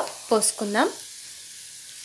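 Cluster bean masala frying in a non-stick pan, a steady faint sizzle. A woman's voice speaks briefly over it in the first second.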